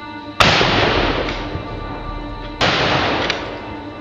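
Two shotgun blasts about two seconds apart, each a sharp report with a long fading tail, over background music.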